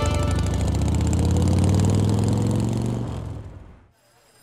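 A motorcycle engine runs and pulls away, its pitch rising slightly before it fades out near the end. A music sting stops just after the start.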